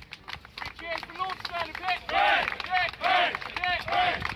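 A group of rugby players clapping and shouting together in rhythm: a string of short, evenly spaced calls with two loud, longer shouts in the middle, as in an end-of-match team cheer.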